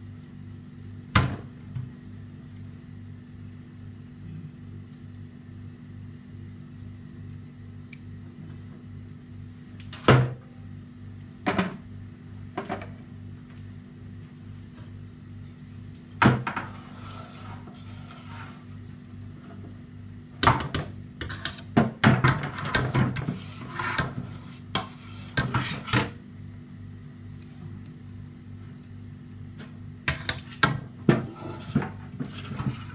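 A utensil knocking and scraping against a metal cake pan while batter goes in and is spread, in a few sharp separate knocks and then a busier run of clatter and scraping about two-thirds of the way in, over a steady low hum.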